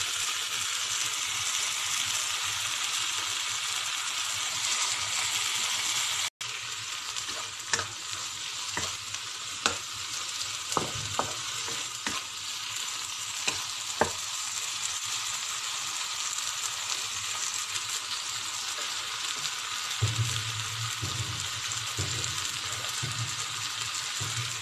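Diced tomato, onion and carrot sizzling steadily in hot oil in a non-stick pan, stirred with a wooden spatula that scrapes and taps against the pan in a string of sharp clicks through the middle. The sound cuts out for an instant about six seconds in.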